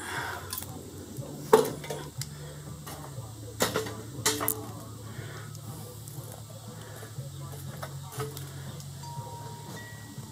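Tin-can charcoal starter and pliers knocking against a steel mesh charcoal basket as lit charcoal is tipped out and pushed into place: about four sharp metal clinks in the first half, then quieter clattering, over a low steady hum.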